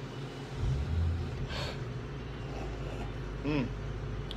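A low rumble starts about half a second in and keeps going. Over it, a person tasting beer takes a short breath about a second and a half in and gives an appreciative 'hmm' near the end.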